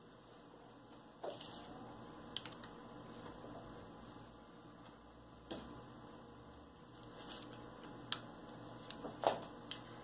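Faint, occasional soft clicks and scrapes of a spoon spreading cream filling over a sponge-cake layer, about half a dozen light touches spread through a quiet room.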